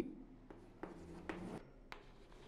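Chalk writing on a blackboard: a few faint short scratching strokes as figures are written, then a sharp tap of the chalk near the end.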